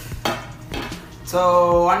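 Aluminium carry case being handled and turned over: a few light metallic clicks and knocks in the first second and a half, then a man's voice briefly.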